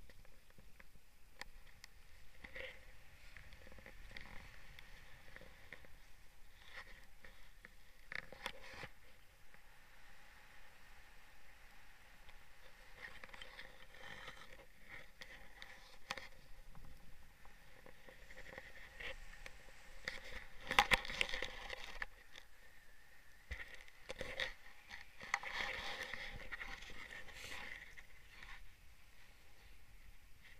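Faint rustling and scraping of clothing and flight gear against the camera in flight, with scattered clicks. There is a louder burst of rustling with a knock about twenty seconds in.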